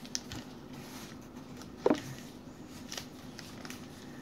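Stack of paper trading cards being handled and flipped through: light sliding and clicking of card against card, with one sharper tap about two seconds in. A faint steady hum runs underneath.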